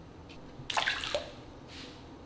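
Water splashing briefly about a second in, followed by a softer slosh near the end.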